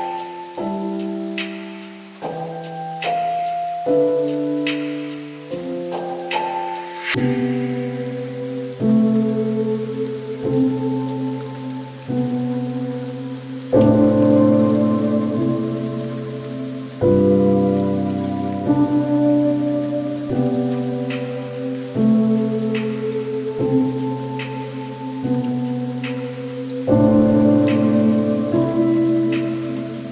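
Slow lofi piano chords, a new chord every second or two, over a steady rain ambience.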